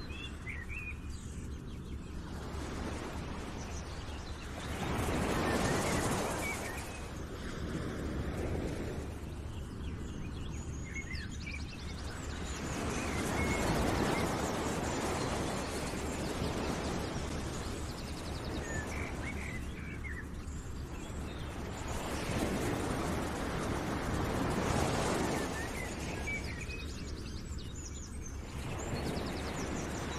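Outdoor nature ambience: a rushing noise that swells and fades about every eight seconds, with scattered bird chirps.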